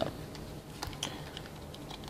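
Faint, scattered small clicks and crinkles of a shiny sticker packet being picked up from a stack and handled in the fingers.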